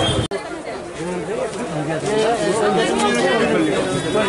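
Overlapping chatter of several men talking at once in a crowded market. Just after the start, an abrupt cut ends a low steady rumble.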